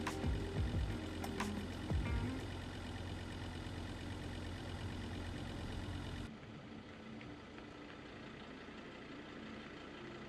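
Vehicle driving slowly along a gravel forest road: steady low engine and tyre rumble, with a few knocks in the first couple of seconds. The sound cuts off abruptly about six seconds in, leaving a much quieter background.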